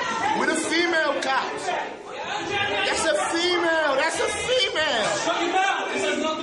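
Several people talking over one another in a hallway, heard through a phone recording, with no single voice clear.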